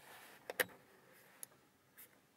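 Plastic clicks of the Lada Vesta's door-mounted electric mirror adjustment switch being pressed: a quick double click about half a second in, then single clicks near the middle and at the end.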